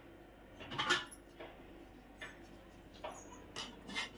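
A perforated metal ladle turning cooked biryani rice in an aluminium pot: a few soft scrapes and rustles against the pot's side, the loudest about a second in. The rice is being lifted gently from the edge so the grains don't break.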